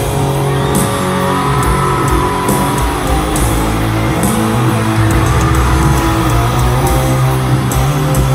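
Live rock band playing a loud instrumental passage, with electric guitar to the fore over bass and drums.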